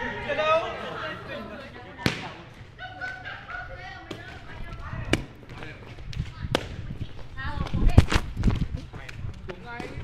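Sharp kicks of a đá cầu shuttlecock off players' shoes during a rally: single clicks a few seconds apart, then a quick run of knocks and low thuds about eight seconds in, with voices talking over the play.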